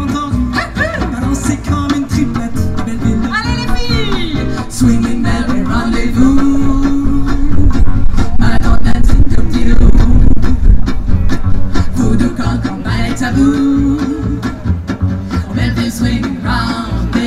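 Live acoustic band playing an instrumental passage: a violin over strummed acoustic guitars and a plucked upright double bass, growing louder through the middle.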